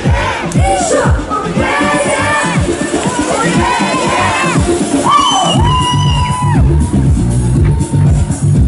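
Loud pop music at a live concert with a crowd cheering and shouting over it; about five seconds in, a heavy pulsing electronic bass beat takes over.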